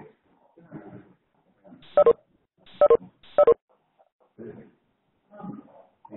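Three short, loud pitched sounds come through a telephone-quality conference-call line about two to three and a half seconds in, amid faint voices saying goodbye.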